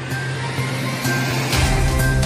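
A television show's opening theme music: held notes under a whoosh that rises in pitch, then a heavy bass and drum beat comes in about one and a half seconds in.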